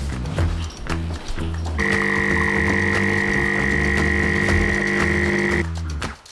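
A Saeco bean-to-cup espresso machine's pump buzzes steadily for about four seconds as it pours espresso, starting about two seconds in and stopping shortly before the end. Background music with a steady bass beat runs underneath.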